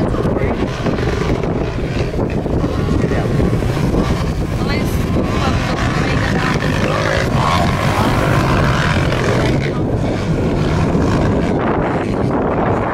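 Distant motocross bikes' engines running on the track, under steady wind buffeting the microphone.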